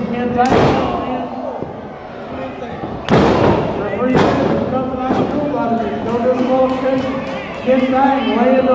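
Strikes landing in a pro wrestling ring: three sharp slaps or thuds, about half a second, three seconds and four seconds in, over voices shouting throughout.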